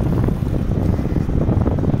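Wind buffeting the microphone of a camera on a moving bicycle: a steady low rumble.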